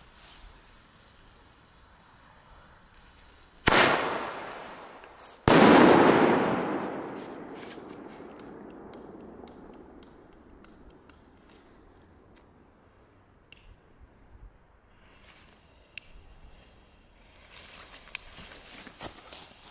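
Dum Bum single-shot firework going off: a sharp bang from the tube, then about two seconds later a louder bang that dies away over a few seconds, the shell's lift charge followed by its burst. Faint scattered clicks follow.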